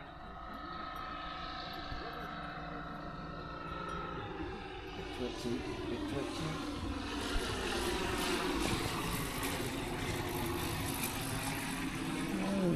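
Light propeller aircraft's piston engine droning on landing approach, its tones drifting slowly in pitch and growing louder as it comes in.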